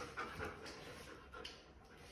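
German Shepherd panting during a tug-of-war game with a rope toy: a few short, quick breaths that grow fainter after the first second.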